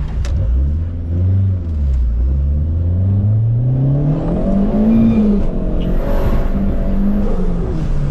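Turbocharged VW EA111 1.6 eight-valve engine accelerating, heard from inside the cabin. Its pitch climbs steadily for about four seconds, then drops sharply a little past the middle and settles.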